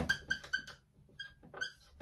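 Marker squeaking on a whiteboard as a word is handwritten: a string of short, high squeaks, one per pen stroke, with a brief pause about a second in before the writing squeaks resume.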